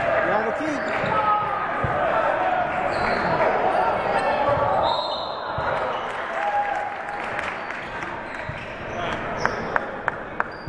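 Basketball dribbling on a hardwood gym floor during a game, under steady shouting and chatter from players and spectators that echoes in the large gym, with a couple of sharp bounces near the end.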